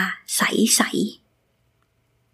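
Speech only: a woman saying a short phrase.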